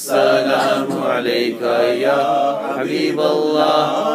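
A man singing an Urdu naat solo, drawing out long notes that bend up and down in pitch.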